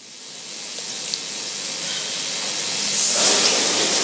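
A steady hiss of electrical noise on the microphone feed, growing louder over the first three seconds and then holding.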